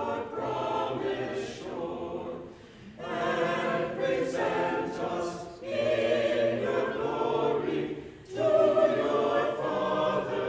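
Church choir of mixed men's and women's voices singing in phrases, with short breaks near three and eight seconds in.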